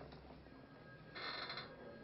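A faint, short ringing sound, lasting about half a second, comes a little past the middle, over a low steady room hum.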